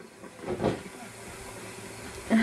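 Low steady hiss of background noise, with a brief faint voice-like call about half a second in.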